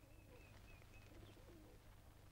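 Very faint pigeons cooing, with a thin, wavering high bird call that stops about a second in, over a low steady hum.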